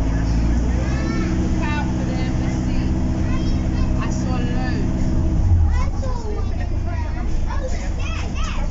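On-board sound of an Enviro400 MMC double-decker bus with a BAE hybrid drivetrain: a steady, low, multi-toned drone that holds level and then drops away about five and a half seconds in. Passengers' voices chatter faintly over it.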